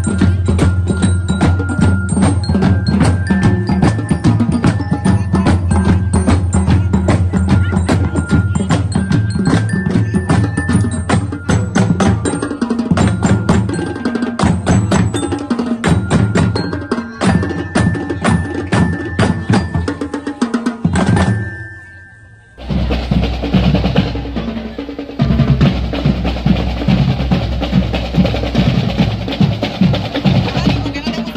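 Marching band percussion playing a fast, steady beat, with bell lyres ringing a melody over the drums. Around two-thirds of the way through the sound dips briefly, then a rougher recording of the drums alone takes over, snare rolls and bass drum.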